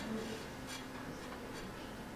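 Low room tone with a faint steady hum and light rustling, and a soft click less than a second in.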